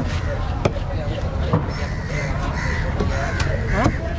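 Crows cawing among background voices, with a few sharp knife knocks on a wooden cutting block in the first two seconds.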